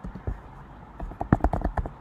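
Computer keyboard typing: a few scattered key clicks, then a quick run of clicks through the second half.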